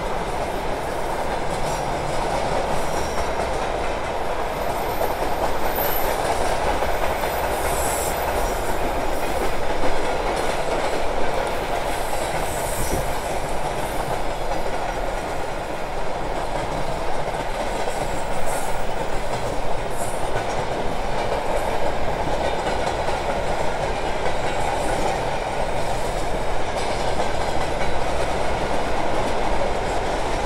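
Passenger train carriage running steadily along the track, heard from its window: a continuous rumble of wheels on rail with a few faint clicks scattered through it.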